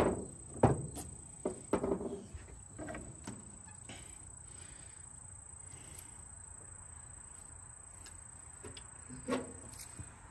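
A few clicks and knocks of battery cables and terminal clamps being handled and fitted onto a battery's posts, bunched in the first three seconds or so, then a faint steady background of insects.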